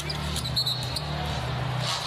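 Live basketball game sound in an arena: crowd noise over a steady low hum, with a ball bouncing on the hardwood floor and a brief high squeak about half a second in.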